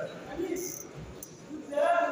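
Voices echoing in a large sports hall, with a brief high-pitched chirp about two-thirds of a second in and a louder raised voice near the end.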